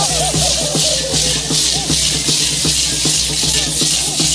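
Many chinchines, the gourd maracas of Parachico dancers, shaken together in a steady rhythm over music.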